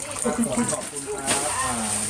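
Indistinct voices of several people talking.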